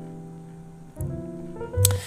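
Background music: held keyboard chords fading slowly, with a new chord coming in about a second in. A short click and knock just before the end.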